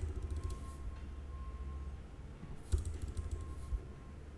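Computer keyboard keystrokes in two short runs, one at the start and one about three seconds in, over a low steady hum.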